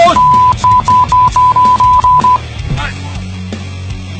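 A rapid string of loud, high beeps at one steady pitch for about two seconds, a censor bleep over the shouting, followed by quieter background music.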